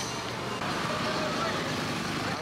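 Steady roadside traffic noise from passing vehicles, with faint voices in the background.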